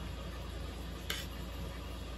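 A metal fork turning pieces of raw crocodile meat in a bowl, giving one short light click about a second in, over a steady low hum.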